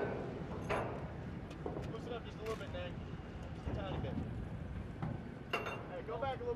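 Boat engine running steadily in the background under faint, indistinct voices, with two sharp knocks, one about a second in and one near the end.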